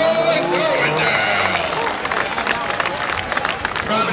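Voices talking over the steady noise of a grandstand crowd. Speech-like sound is clearest in the first second or so, after which crowd noise dominates.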